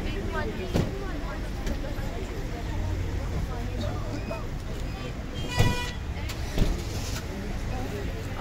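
Voices of a crowd talking over the steady low rumble of idling vehicles and road traffic. A short single horn toot sounds a little past halfway, followed about a second later by a sharp thump, with another lighter knock near the start.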